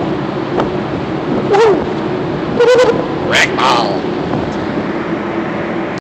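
Steady hum of ship's machinery under an even rushing noise, broken three times by short bursts of a man's voice.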